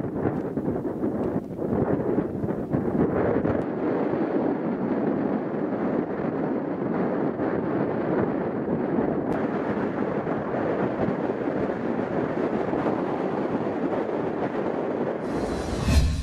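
Steady noise from an erupting volcano's lava flows, mixed with wind on the microphone. A swelling whoosh near the end.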